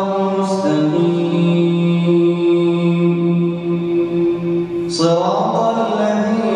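A man's solo voice reciting the Quran in Arabic in the melodic tajweed style, leading congregational prayer. He holds one long note from about a second in until about five seconds, then begins a new phrase that rises in pitch.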